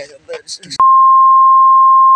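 A censor bleep: a loud, steady single-pitch beep dubbed over the soundtrack. It starts abruptly a little under a second in and mutes everything else while it sounds.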